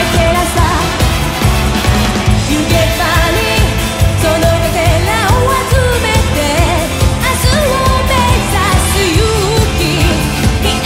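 Live J-pop rock performance: a female vocalist sings an upbeat melody over a band of electric guitars, keyboards and drums with a steady driving beat.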